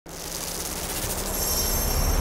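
A swelling rush of noise with a low rumble that grows steadily louder, joined about two-thirds of the way in by high, steady, metallic ringing tones.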